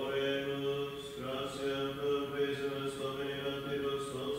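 Men chanting a prayer of Vespers, holding long, nearly level notes that change pitch only now and then.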